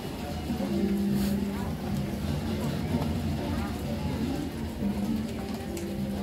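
Indistinct voices talking, with music in the background.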